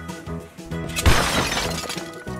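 A sudden crash with a shattering clatter about a second in, fading over most of a second, as a plastic toy tractor comes apart into pieces, over background music.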